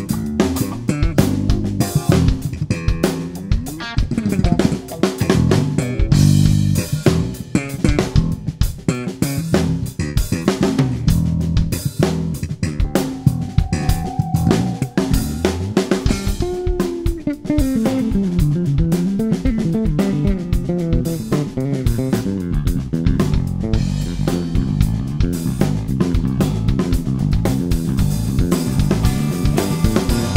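Fender American Deluxe Dimension electric bass playing a busy, rhythmic bass line with a band: drum kit and electric guitar. Sliding notes about two-thirds of the way through.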